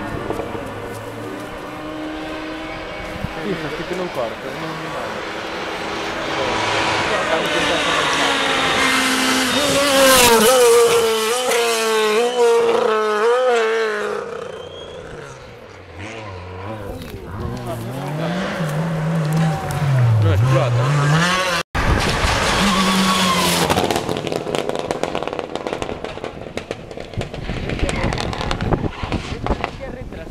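Rally car engine revving hard as it comes up the stage, its pitch climbing and wavering through gear changes to a loud peak about ten seconds in. Just before twenty seconds the revs dip and climb several times as it brakes and accelerates, and there is a sudden brief dropout just past twenty seconds.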